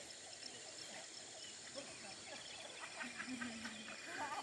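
Quiet rural outdoor ambience with faint, scattered calls of distant birds, and a short low call near the end.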